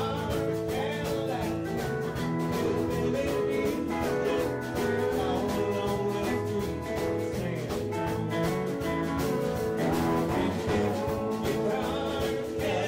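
Live country band performing: a man singing over a Hammond SK1 stage keyboard, with a steady drum beat.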